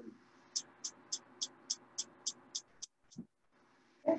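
Gas range burner igniter clicking, a faint rapid run of about ten evenly spaced ticks at three to four a second as the burner is lit under the pan, stopping about three seconds in, followed by a single brief low thud.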